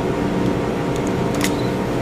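Steady mechanical hum, with a single sharp click about one and a half seconds in as the parts of an Eppendorf micropipette are fitted back together.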